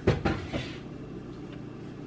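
Knocks and a short crinkle from a plastic-wrapped foam meat tray of pork belly being handled, with a couple of sharp knocks right at the start. A steady low hum runs underneath.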